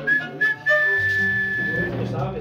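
Someone whistles a few short high notes, then holds one long high whistled note, over the low notes of a mariachi band's instruments.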